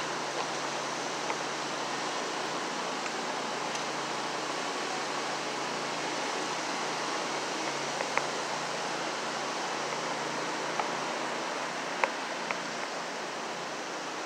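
Steady, even rushing noise of the Great Falls of the Passaic River and its rapids, with a faint click about eight seconds in and another near the end.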